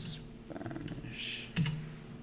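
Typing on a computer keyboard: a few key presses, with one louder keystroke about one and a half seconds in as the search is sent.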